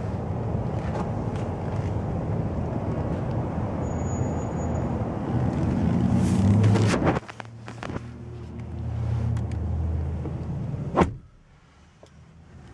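Steady rumbling background noise that drops off abruptly about seven seconds in. Just after eleven seconds a single sharp thud follows, a Lexus CT200h's door being shut, and the sound goes much quieter inside the closed cabin.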